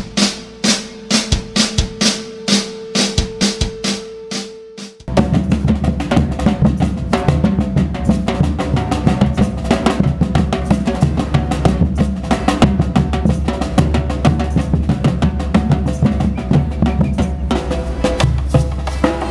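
For the first five seconds, evenly spaced drum hits, about two to three a second, over one held tone; then it cuts abruptly to a street drum band playing a dense, loud rhythm on large mallet-struck bass drums and smaller snare-type drums.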